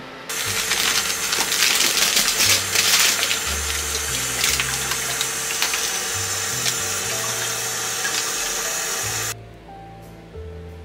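Kitchen tap running onto berries in a plastic punnet, a steady rush of water with scattered splashes and clicks, starting just after the start and cutting off suddenly near the end. Background music plays underneath.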